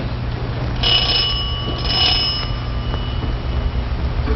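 A small bell rung twice, about a second apart, its ring fading away over the next two seconds: a doorbell announcing a visitor at the door.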